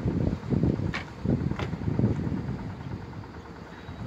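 Wind buffeting a phone microphone in uneven gusts, strongest in the first two seconds and easing off, with two faint clicks about one and one and a half seconds in.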